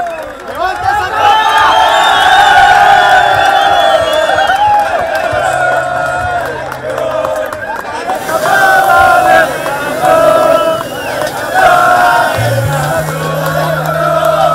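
A group of football players shouting and chanting together as they celebrate lifting a championship trophy: long drawn-out group yells, then short, rhythmic chanted phrases. Music with a low bass comes in near the end.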